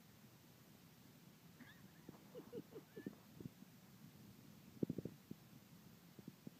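Near silence: faint outdoor room tone broken by a few soft, dull knocks, a scattered run about two to three seconds in and a tighter, slightly louder cluster near five seconds, with a couple of faint high chirps.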